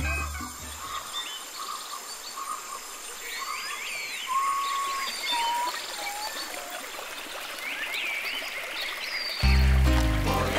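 Shallow stream running over rocks, a steady hiss of water, with several birds calling over it in short chirps and a few clear whistled notes. Music fades out in the first second and cuts back in loudly near the end.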